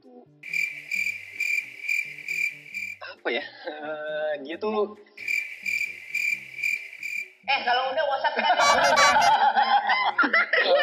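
Cricket-chirping sound effect, a steady high chirp about twice a second, the stock comic cue for an awkward silence. It plays twice with a short voice between, and laughter takes over near the end.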